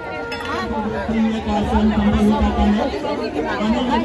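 Crowd chatter: many people talking at once, with a steady low hum beneath the voices that breaks off briefly near the end.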